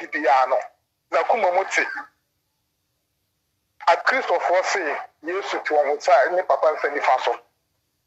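A man talking animatedly through a phone's speaker, in several bursts of speech broken by completely silent gaps.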